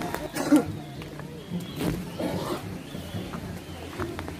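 Voices of a crowd walking on a trail, with one brief, loud vocal sound about half a second in and a weaker call near the middle.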